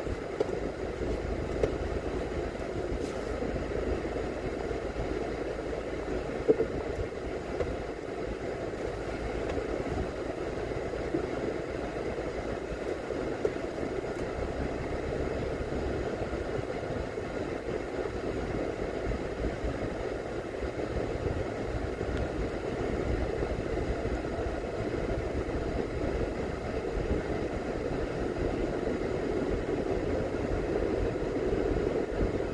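Steady running noise of a car driving slowly: engine and tyre hum with a low rumble, growing slightly louder in the last third, with a few brief knocks in the first half.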